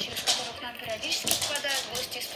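Scattered light clicks and taps of dog claws on a laminate floor as two Pembroke Welsh corgis scramble over a tug toy.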